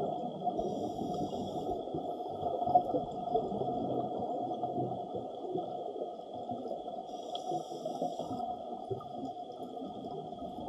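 Underwater ambient noise: a steady low rushing murmur of moving water with faint steady tones, and two short high hisses about six seconds apart.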